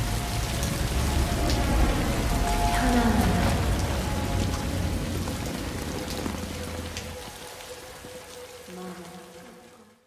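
Rain falling on a car, heard from inside the cabin, over a low rumble and a few faint steady tones. The rumble stops about seven seconds in, and the whole sound fades out near the end.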